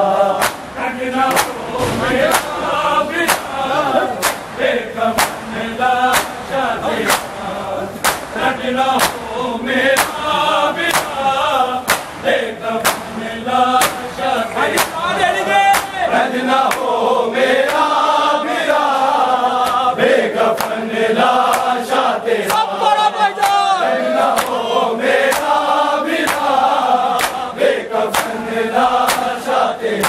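Men chanting a noha, a Shia mourning lament, together as a group, with a large crowd of mourners beating their chests in unison (matam). The hand slaps land as a steady, even beat under the chant.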